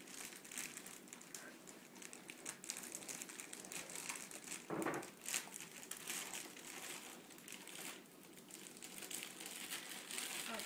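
Clear plastic bag crinkling and rustling in irregular crackles as it is pulled and worked off an RC monster truck.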